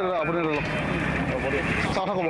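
A man speaking briefly, then a steady street-noise background with faint voices of a crowd.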